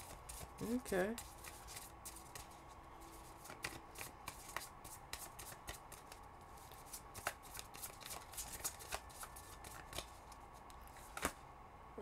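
A deck of tarot cards being shuffled by hand, heard as a long run of faint, irregular card clicks and flicks.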